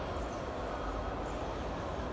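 Steady low rumble of a large airport terminal hall, even throughout with no distinct events.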